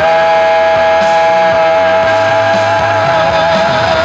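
A male singer holds one long high note, steady with a slight vibrato near the end, over a loud rock band backing track.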